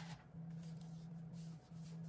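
Faint handling noise of a MacBook Air laptop being picked up and tilted in the hands, soft rubbing of skin on its aluminium case, over a steady low hum.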